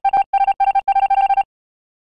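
Electronic text-typing sound effect: a rapid run of short beeps all on one pitch, stopping about one and a half seconds in.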